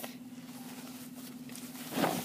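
Faint rustling of toilet paper as it is wrapped around a cardboard tube, with a short louder rustle at the start, over a steady low hum.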